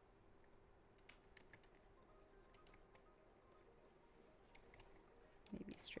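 Near silence with a faint steady hum and scattered faint clicks of computer keys as she works. A voice comes in just before the end.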